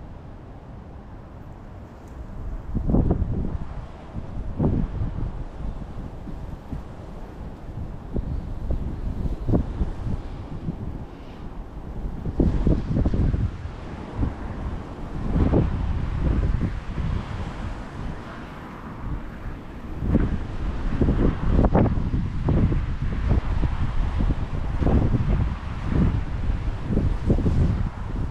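Strong wind buffeting the microphone in gusts, quiet for the first couple of seconds and then surging again and again, most often in the second half.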